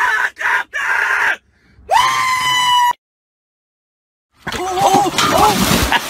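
A person's scream rises and is held for about a second, then cuts off into silence. After about a second and a half, water splashes as someone goes in beside a dock, with shouting voices over it.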